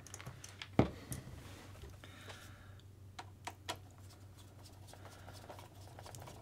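Small clicks and taps of parts being fitted as a kingpin is dropped through an RC car's aluminium front hub and a screwdriver is set on it. One sharp click about a second in, a few lighter ticks between three and four seconds in, over a faint steady low hum.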